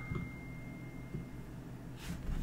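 A phone's alert tone, one steady high ring, dies away about half a second in. Faint room sound with a few small knocks follows.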